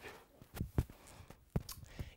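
A barefoot person getting up off a hard tiled floor: a few soft knocks and shuffles of hands and feet on the floor, spaced out over about a second.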